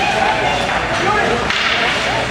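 Ice hockey rink during play: spectators calling out and shouting, over the clatter of sticks and puck on the ice and a few sharp slaps, all echoing in the arena.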